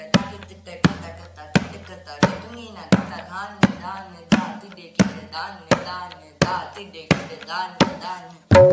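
A tabla player recites rhythmic syllables (bols) aloud in time, over single sharp tabla strokes evenly spaced about every 0.7 seconds.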